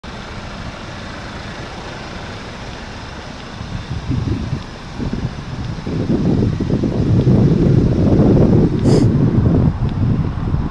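Wind buffeting the microphone, as uneven low rumbling gusts that build from about four seconds in and are strongest near the end, over a steady background of outdoor noise.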